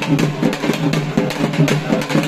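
Loud music led by fast drumming, the strokes coming several to the second.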